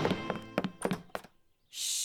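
Cartoon sound effects: a few quick footsteps thudding on a wooden floor as the music score fades out, then a drawn-out "shh" hush near the end.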